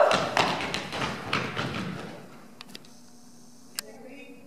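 Fast running footsteps on a stage floor: a quick series of thuds that fades away over about two seconds as the runners move off. A few faint taps follow near the end.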